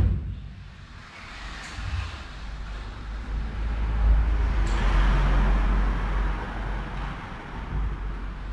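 A vehicle passing by: a low rumble with a hiss over it that swells from about three seconds in, is loudest around five seconds, and then eases off.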